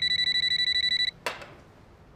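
Office desk phone ringing with a high, rapidly pulsing electronic trill, which stops about a second in; a short knock follows as the phone is answered.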